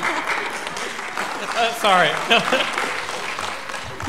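Audience applauding briefly, the clapping fading over the first couple of seconds, with a short burst of a voice laughing about two seconds in.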